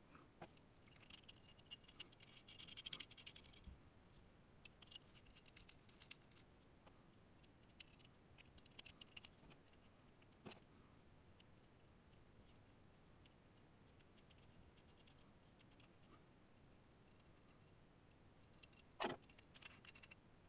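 Near silence, broken by faint metallic clicks and light scraping as the small metal parts of an airbrush are handled and fitted back together, needle slid in and rear parts threaded on.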